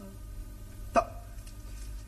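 A single short, sharp vocal sound about a second in, a clipped syllable heard as "to", over a steady low hum in the old recording.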